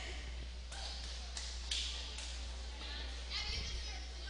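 Echoing gymnasium ambience during a pause in a volleyball match: scattered distant voices of players and spectators in short bursts, over a steady low hum.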